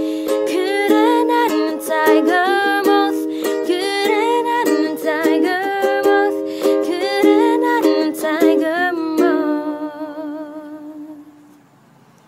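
A ukulele strummed in chords with a voice singing along over it. About nine seconds in, the strumming stops and the last chord is left to ring and fade away.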